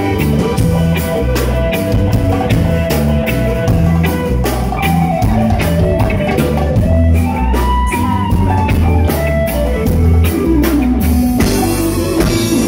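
Live band playing an instrumental stretch with no singing: drum kit and electric guitar over a steady beat and a deep, stepping bass line.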